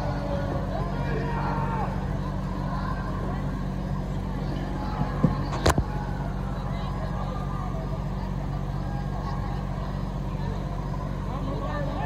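Steady low hum of a vehicle engine idling, most likely the parked ambulance, with faint background voices. About five and a half seconds in comes a sharp click, the loudest sound, with a smaller one just before it.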